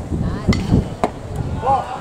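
A baseball pitch smacking into the catcher's leather mitt: two sharp knocks about half a second apart, the first about half a second in.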